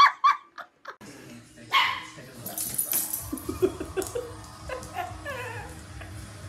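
A dog vocalizing: a quick run of short barks a few seconds in, then higher calls that glide down in pitch.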